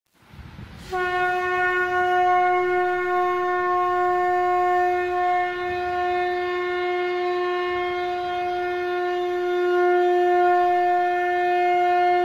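A conch shell (shankh) blown in one long, steady, unbroken note that starts abruptly about a second in, after a brief low rumble.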